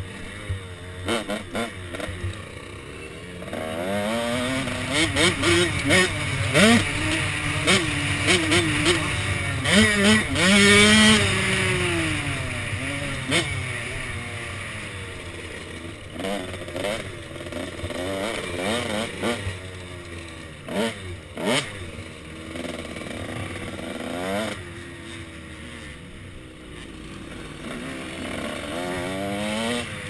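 KTM SX 105 two-stroke dirt bike engine revving up and down as it is ridden hard around a motocross track. It is loudest about a third of the way in. Scattered sharp knocks and wind rush come over the helmet-mounted microphone.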